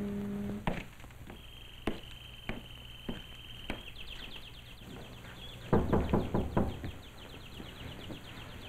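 Caged songbird singing: a long held whistle, then fast repeated chirping trills. A few single sharp taps come in the first half. Near the middle there is a quick run of about five loud knocks, like rapping on a wooden door.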